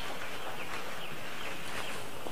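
A dense, steady chorus of high peeping from a house full of about 3,000 five-day-old chicks.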